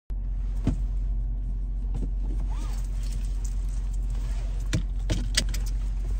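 Steady low hum of a car running, heard from inside the cabin, with several sharp clicks and small metallic rattles as a seatbelt is pulled across and buckled.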